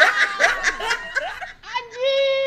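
A woman laughing hard in quick, repeated bursts, fading out near the end.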